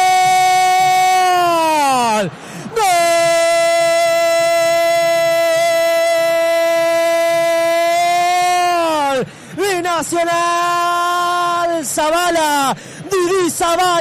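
Radio football commentator's goal cry: one man's voice holds a drawn-out 'gol' on a high, steady note, dropping in pitch each time his breath runs out. A long held note breaks off about two seconds in, a second runs for about six seconds, then shorter, broken cries follow near the end.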